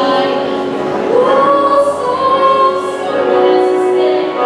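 Music with singing: a female voice and choir over accompaniment, with long held notes.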